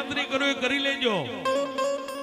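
Live Gujarati devotional folk music: a man's voice sings a wavering, sliding melody, with a long downward slide about a second in, over a steady harmonium drone and plucked-string accompaniment.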